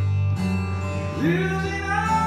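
Live acoustic guitar with a singing voice, long held notes over sustained low guitar tones in a slow ballad.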